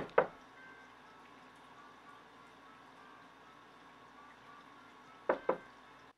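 Knuckles knocking on a wooden door: two quick knocks at the start, then two more near the end, with faint room tone between.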